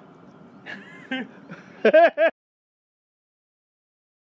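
A person laughing in a few short bursts over faint outdoor background, ending in a quick run of three; then the sound cuts off abruptly to silence a little over two seconds in.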